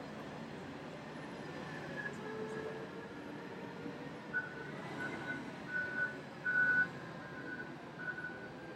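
Steady machinery din from a large Komatsu wheel loader at work, with a high back-up alarm beeping repeatedly from about halfway through.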